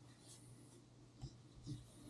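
Near silence: faint room tone with two small soft taps, one just past a second in and one near the end.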